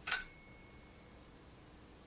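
A sharp double click near the start, with a faint high ringing tone trailing on for about a second, then quiet room tone.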